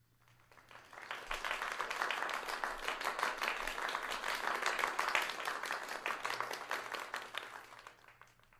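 Applause from many hands clapping, swelling up over the first second or so, holding steady, then fading out near the end.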